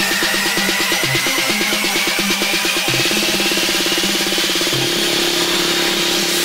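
Progressive house build-up from a DJ mashup: a synth sweep rises steadily in pitch while a pulsing roll speeds up about halfway through and merges into one held buzz near the end.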